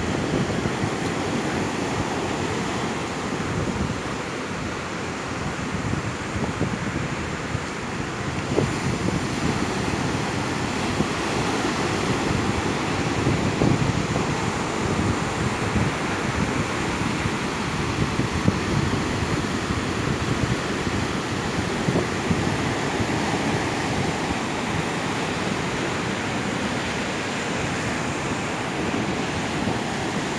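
Ocean surf breaking and washing up a sandy beach, a steady rush of waves, with wind buffeting the microphone.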